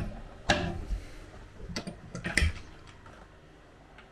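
A few sharp clicks and knocks as a galley countertop hatch lid is pressed, unlatched and lifted open. The loudest knocks come about half a second in and again a little past two seconds.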